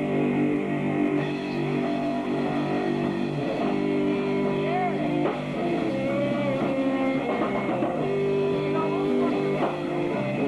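Garage rock band playing live: electric guitar through an amplifier playing held chords that change every second or so, over a drum kit.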